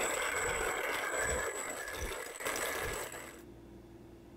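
Hand-cranked manual coffee grinder grinding roasted coffee beans, a steady grinding that stops abruptly about three and a half seconds in.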